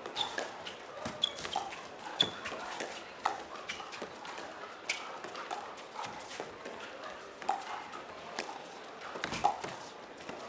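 Pickleball rally at the net: sharp, ringing pops of paddles striking the hollow plastic ball, about one hit a second in a soft dinking exchange.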